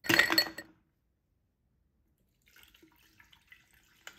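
Lemonade poured over ice cubes in a tall drinking glass: a short splashing burst with clinks of ice at the start, then silence, then faint crackling of the ice cubes during the last second and a half.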